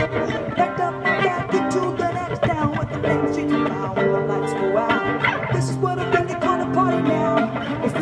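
A woman singing while strumming a steel-string acoustic-electric guitar, an upbeat solo cover song.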